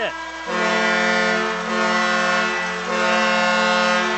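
Ice hockey arena's end-of-game horn, one long steady note starting about half a second in and lasting about three and a half seconds: the final horn as time expires.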